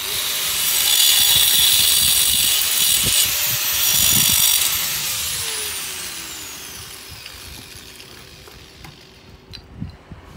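Angle grinder starting up and cutting a thin decorative brick slip, a loud high whine; about five seconds in it is released and winds down, its pitch falling over the next few seconds.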